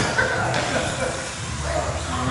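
Faint, indistinct voices over the steady background noise of a large hall.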